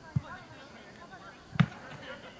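A football being kicked: two dull thumps about a second and a half apart, the second louder and sharper.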